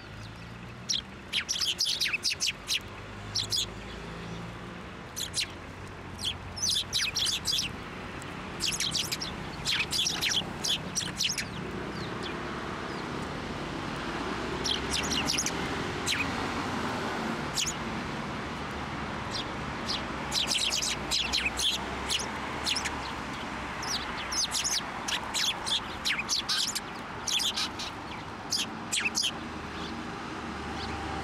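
Eurasian tree sparrows chirping: quick clusters of short, high notes that come in bursts every few seconds.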